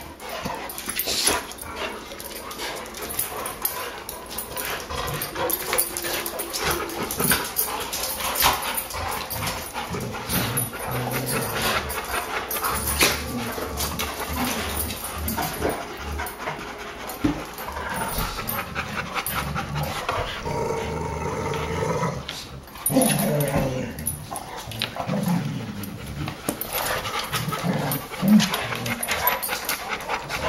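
A group of Labrador retrievers and boxer mixes playing and wrestling together, with play growls and the scuffle and clatter of paws and bodies on a tile floor, in many short knocks and clicks.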